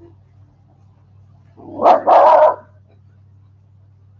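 West Highland white terrier barking twice in quick succession about two seconds in, loud and close; the second bark is longer.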